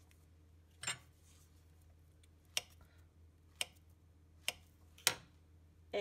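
A serrated knife slicing a banana, each cut ending in a sharp tap of the blade on the surface beneath: five taps spaced roughly a second apart.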